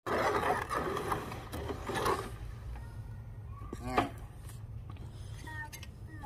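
A hoe scraping and churning wet concrete in a steel wheelbarrow for the first two seconds or so, over a steady low rumble. Short high vocal sounds from a small child come about four seconds in and again near the end.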